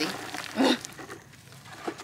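A plastic nursery pot being slid off a potted blueberry bush's root ball, with soft scraping of plastic against soil, a short voice-like sound about half a second in and a sharp click near the end.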